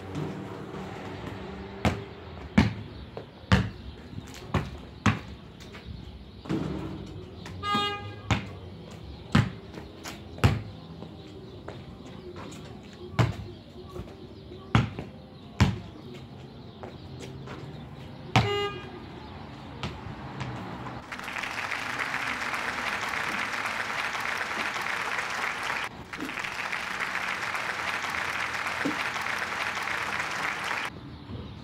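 A basketball dribbled and shot on a concrete driveway: irregular sharp bounces for about twenty seconds, with two short ringing tones about 8 and 18 seconds in. From about 21 seconds a steady rushing noise takes over, with a brief break halfway through.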